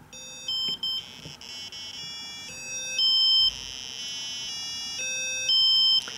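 Small speaker driven by an Arduino pin, sounding buzzy electronic square-wave notes that jump abruptly from one pitch to another every half second or so as the timer interrupt steps the note through its octaves. The tone stutters briefly in the first second, and the highest steps are shrill.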